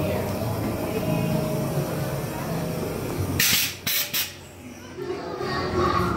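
Haunted-maze background sound: indistinct voices over a steady low hum. About three and a half seconds in come a few short, sharp bursts of hiss, then a brief lull before the voices pick up again.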